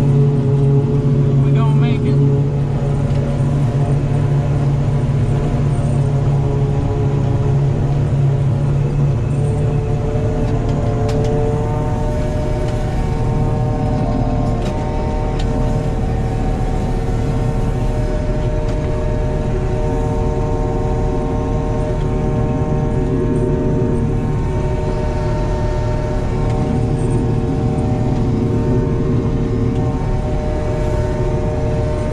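John Deere 5830 self-propelled forage harvester running under load while chopping corn, heard from inside the cab: a steady drone of engine and chopper tones. The tones step up in pitch about ten to twelve seconds in.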